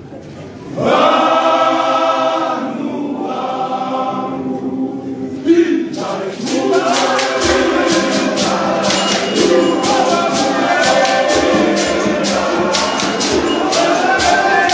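Men's choir singing a gospel song, joined about six seconds in by steady rhythmic handclaps and fuller low voices.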